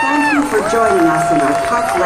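A choir's held final chord, its notes sliding off about half a second in, then an announcer's voice starting over a long held music note.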